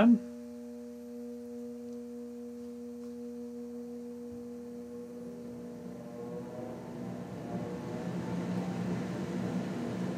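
Minneapolis Blower Door Model 3 fan running under cruise control to depressurize the building toward 50 pascals. A steady motor hum is heard, and from about six seconds in the rushing air grows louder and climbs in pitch as the fan speeds up.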